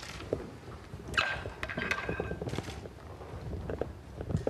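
Rapid, irregular clicking of press camera shutters, with a brief high squeak about a second in, as the flag on its pole is unfurled.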